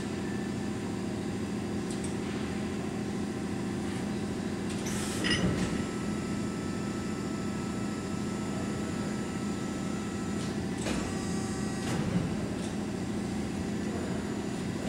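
An LVD 240-ton hydraulic press brake's hydraulic pump unit running with a steady hum. There is a brief noisier burst about five seconds in and another around eleven to twelve seconds in, as the machine works.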